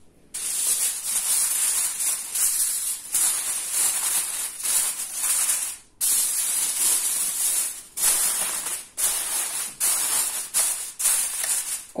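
Aluminium foil crinkling as a sheet is laid over a roasting tray and pressed down around its edges: one long stretch of crackling, a short pause about halfway, then a run of shorter crackles.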